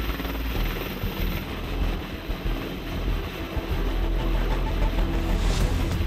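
AH-64 Apache attack helicopter hovering low, its main rotor and twin turboshaft engines running steadily.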